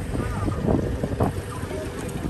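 Safari vehicle driving on a dirt track: a steady low engine rumble with wind buffeting the microphone, and faint voices underneath.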